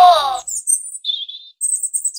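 Birdsong sound effect for a cartoon scene: short, high-pitched chirps and tweets. Before them, a wavering tone fades out about half a second in.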